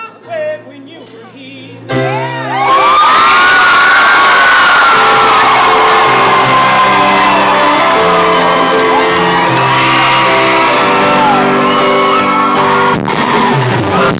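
A live band holds sustained keyboard chords at a rock concert. From about two seconds in, a loud crowd cheers, screams and whoops over the music.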